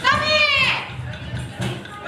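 A high-pitched voice cries out once in a long call that rises and then falls in pitch, over the rap number's backing music with a steady low beat.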